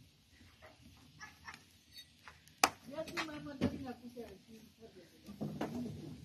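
A wood fire crackling in a brick oven, with scattered sharp pops; the loudest comes about two and a half seconds in. Low voices talk in the background in the second half.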